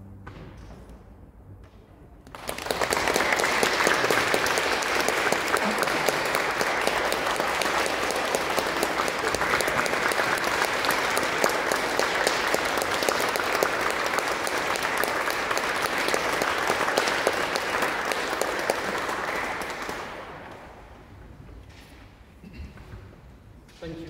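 An audience applauding in a large, echoing church. The clapping breaks out about two seconds in, after the last orchestral chord has faded, holds steady, and dies away near the end.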